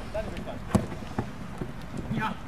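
Sounds of a five-a-side football game: a few sharp knocks, the loudest about three-quarters of a second in and another just past a second, with faint voices.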